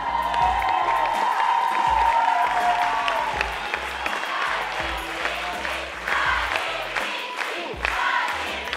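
An audience applauding and cheering over the closing song's backing music, which is strongest for the first three seconds or so and then carries on more faintly: curtain-call applause.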